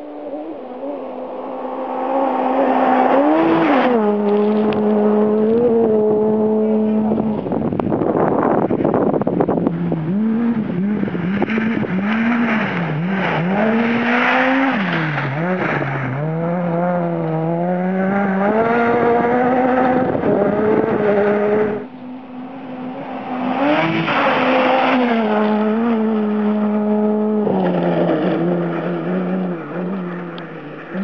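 Ford Fiesta R2 rally car's four-cylinder engine driven hard on gravel. The revs climb and fall repeatedly through gear changes and lifts, with a loud rush of noise about eight seconds in. The sound cuts off abruptly about 22 seconds in, and another pass of the revving engine follows.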